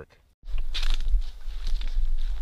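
Wind rumbling on the microphone outdoors, with scattered light crackles, starting about half a second in after a moment of near silence.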